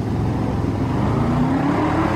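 Car engine running with a low rumble, its pitch slowly rising in the second half.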